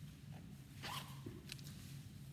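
Faint handling noise: two short rustling swishes, about a second in and half a second later, over a low steady hum.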